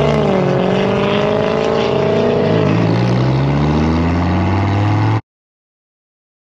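Sports car engine running hard under way, its pitch rising and falling with the throttle; it cuts off suddenly about five seconds in.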